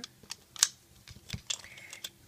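Plastic Rainbow Loom pieces clicking and knocking as the loom is turned over and its base plate is shifted: a few sharp separate clicks, the loudest a little over half a second in.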